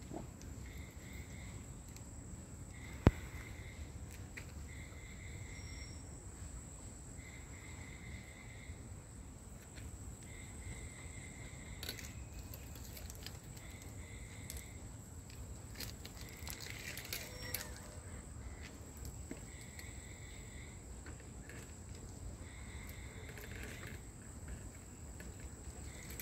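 Night insects calling: a steady high-pitched trill, with a lower call repeated about every second and a half. A single sharp click about three seconds in.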